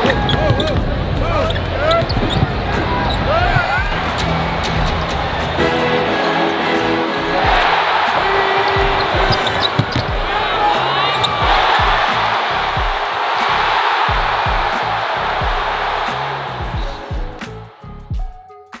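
Arena basketball game sound: a basketball bouncing and sneakers squeaking on the hardwood court, with crowd noise rising in swells about halfway through, over background music and scattered shouted voices. It fades out near the end.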